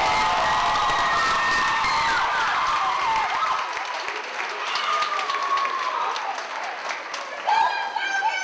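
Audience clapping and cheering with high-pitched whoops and screams as a song ends. It starts loud, eases a little midway, and has a fresh burst of shouts near the end.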